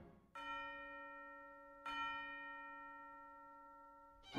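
Two strikes of a bell-like chime in the film's music score, about a second and a half apart, each ringing out slowly with a clear, steady pitch.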